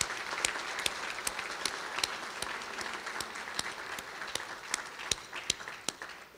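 Audience applauding, with a few louder single claps standing out from the dense clapping; it dies away near the end.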